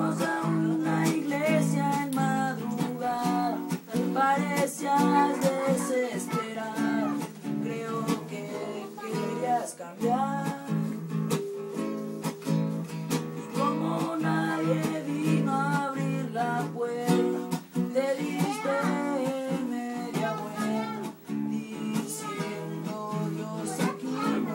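Nylon-string classical guitar strummed in a steady rhythm, with a voice singing the melody over the chords.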